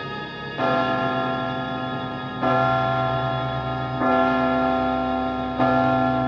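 Orchestral film-score music for the opening titles: sustained full chords, a new one struck about every one and a half seconds, each a little louder than the last.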